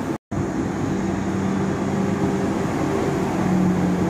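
Road traffic: heavy vehicles such as a lorry and buses running past on a multi-lane road, a steady rumble with an even engine hum. The sound drops out for a moment just after the start.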